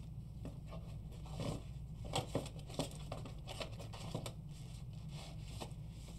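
Faint scattered clicks and rustles of trading cards and hard plastic card cases being handled and shuffled, over a steady low hum.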